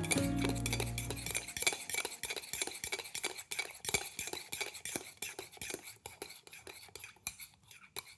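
Metal spoon stirring in a ceramic mug, clinking quickly and repeatedly against the inside, growing fainter toward the end. A music bed fades out in the first second and a half.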